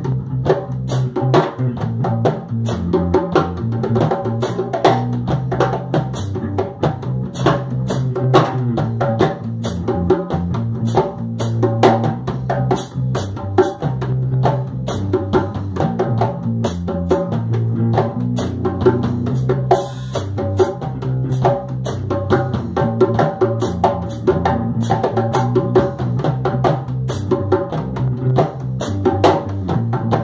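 A band playing an instrumental stretch of a song without vocals. A drum kit keeps a steady beat with bass drum and snare over a sustained bass line and mid-range pitched instruments.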